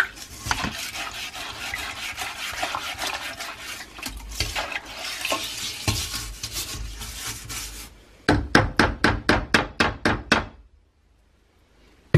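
Toilet brush scrubbing a ceramic toilet bowl sprinkled with soda crystals: a continuous wet, scratchy swishing, then a run of about a dozen quick back-and-forth strokes that stops abruptly near the end.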